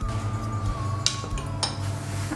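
Two short hard clicks, about a second in and again just past halfway, of a rolling pin being put down on a stone countertop, over soft background music.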